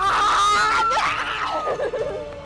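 Young women screaming with excitement at winning, several voices overlapping in one long high scream that is held for about a second and a half and then dies away.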